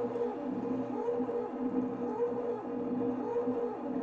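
ClearPath servo motors of an egg-painting CNC machine whining as they turn the egg and swing the marker arm, the pitch gliding up and down with each stroke over a steady hum.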